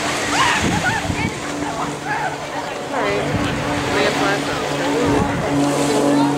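Scattered chatter of many people on a beach, with surf in the background; a steady low hum from a motor comes in about three seconds in.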